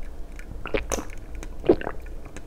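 A person gulping a drink from a glass, close to the microphone: two swallows about a second apart.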